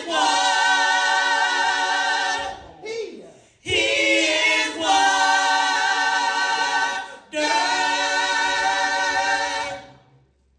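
A small vocal group, mostly women, singing a cappella in close harmony, holding long chords in three phrases with short breaks between, fading out at the end.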